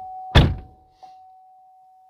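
A 2015 Chevrolet Camaro's door is pulled shut with one solid thunk about a third of a second in, dying away quickly. A thin, steady tone runs underneath.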